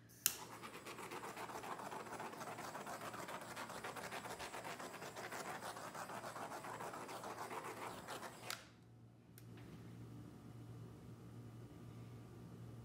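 Handheld butane torch clicking alight and running with a steady crackling hiss as it is swept over wet acrylic pour paint to pop the air bubbles, then shut off with a click about eight and a half seconds in.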